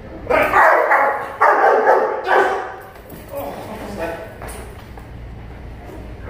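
Young shepherd-type protection dog barking hard in three loud bursts in the first two and a half seconds, then a few fainter, shorter sounds.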